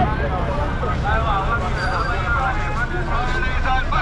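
Busy street-market hubbub: many voices talking and calling at once over the steady low rumble of car engines in slow traffic.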